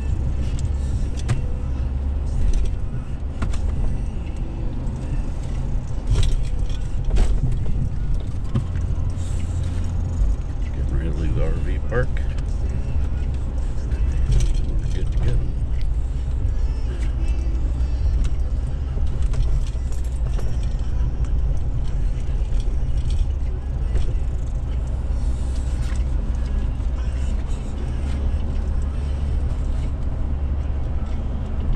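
Inside the cab of a Ford Super Duty pickup truck on the move: a steady low engine and road rumble, with occasional short clicks and rattles from the cab.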